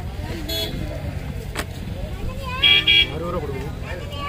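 A vehicle horn gives two short toots about two and a half seconds in, over a steady low rumble and voices.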